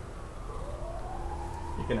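A faint tone that climbs in pitch for about a second and then holds steady, over a low background hum. A man's voice starts near the end.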